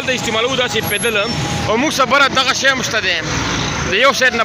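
A man talking over steady street traffic noise from motor vehicles.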